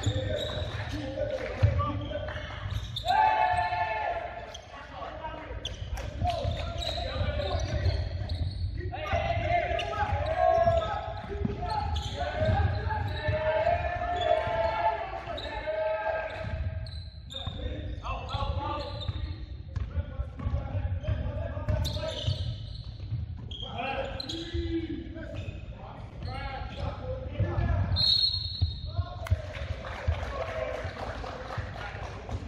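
A basketball being dribbled and bounced on a hardwood gym floor, with repeated knocks throughout, in a large hall, mixed with players' shouting voices.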